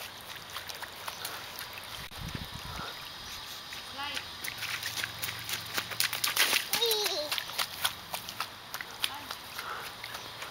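A small child's short wordless vocal sounds, about four seconds in and again near seven seconds, among scattered light taps and clicks.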